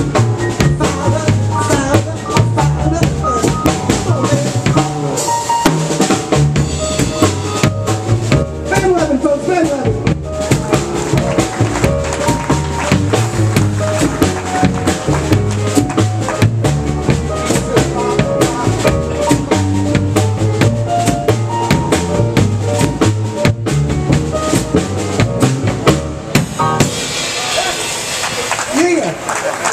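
Live band playing a New Orleans rhythm-and-blues piano number: electric stage piano over upright bass and a drum kit keeping a steady beat. Near the end the music stops and applause starts.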